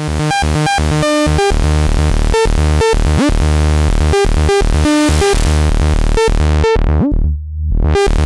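Sequenced Eurorack synth line: a sawtooth oscillator with sub-oscillator and noise running through the Pas-Isel low-pass filter module. Quick stepped notes play over a steady sub bass, and the hiss swells toward the middle. About seven seconds in, the high end drops away as the filter closes.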